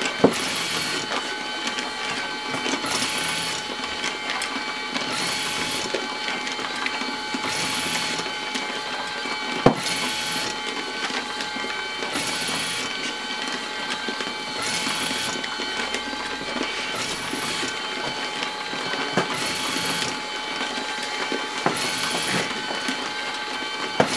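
LAB500 automatic labelling machine running, its feeder and conveyor belt giving a steady whir with fixed tones. A short hissy swish comes about every two seconds as each vacuum-sealed coffee bag is fed through and labelled. Two sharp clicks, one right at the start and one about ten seconds in.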